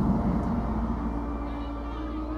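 Soft background score from the animated episode: a steady low drone under long held notes, slowly growing quieter.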